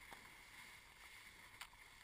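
Faint steady rush of water along the side of a moving inflatable raft, with one small tick late in.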